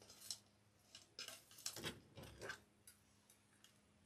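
Faint, scattered rustles and small clicks of hands handling a cardboard-backed sign, pipe cleaners and deco mesh.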